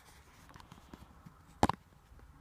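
Faint rustling and fumbling handling noise as a phone camera is moved about in the hand, with one sharp knock about one and a half seconds in.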